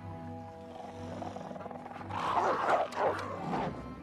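Soft orchestral film score, joined about two seconds in by a burst of animal snarling and growling that is the loudest sound, lasting under two seconds.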